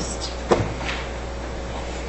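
A single sharp knock about half a second in, over a steady low room hum.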